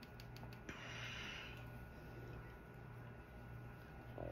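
A soft breath through the nose about a second in, lasting under a second, after a few faint clicks, over a steady low room hum.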